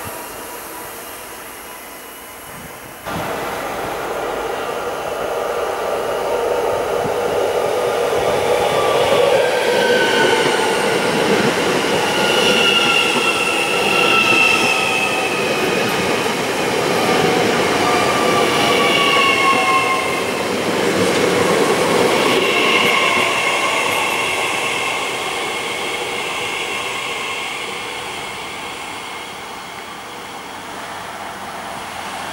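Z 50000 Francilien electric multiple unit running along the platform. Its wheel and running noise builds, peaks, then fades as it moves away, with high squealing tones gliding slowly down through the middle.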